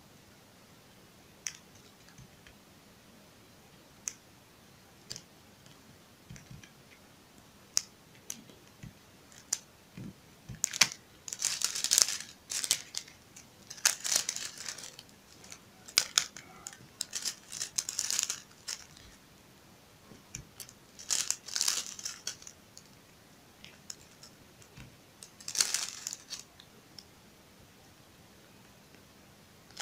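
A clear plastic bag of loose rhinestones crinkling in irregular bursts as it is handled, most of it in the middle of the stretch, with scattered small sharp clicks as single stones are picked up and set down on a plastic sheet.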